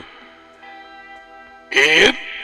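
Soft background music holding a steady chord under a pause in speech. A man's voice starts again near the end.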